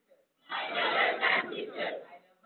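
A large group of students reciting a pledge aloud in unison, many voices speaking together. One phrase begins about half a second in, after a short pause.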